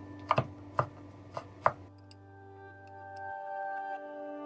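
Chef's knife chopping ham on a wooden cutting board: about five sharp knife strikes in the first two seconds, then they stop. Soft background music runs underneath.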